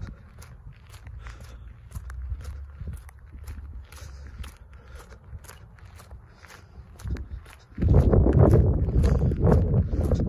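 Footsteps of Nike Air Monarch sneakers on concrete, each step a short sharp click or crunch of grit under the sole, at a steady walking pace. Near the end a loud, rough rumbling noise comes in suddenly over the steps.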